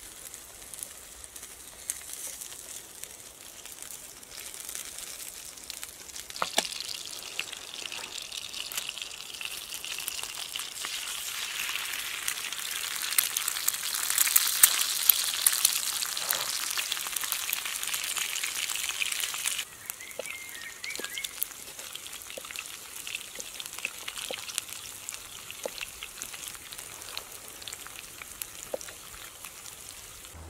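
Burgers, a fried egg and onions sizzling in a skillet over a campfire, with sweet potato wedges frying in a second pan: a steady crackling hiss with small pops. It grows louder after the first few seconds and drops off suddenly about two-thirds of the way through, then carries on more faintly.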